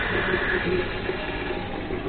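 La Cimbali M39 Dosatron espresso machine just after its pump has shut off: a hiss fading away over the first second as the shot ends, then low steady background noise.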